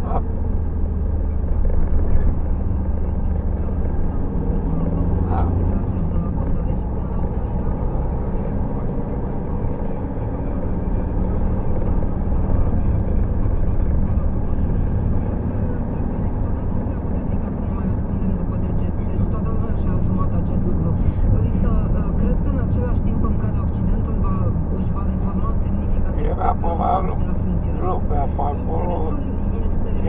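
Steady low engine and tyre rumble of a vehicle driving on the open road, heard from inside the cab.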